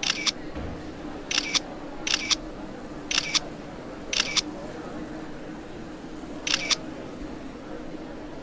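Camera shutter firing six times at uneven intervals, each shot a quick double click, over a low steady hum.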